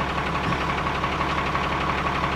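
A school bus engine running steadily, a low even hum with a fast, regular firing pulse.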